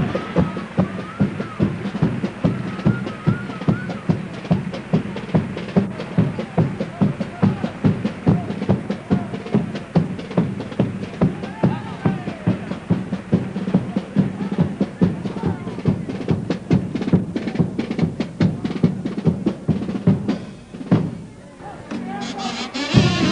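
Carnival chirigota band music: a steady bass drum and snare beat at about two to three hits a second, with a wavering kazoo line early on. The music thins out briefly near the end.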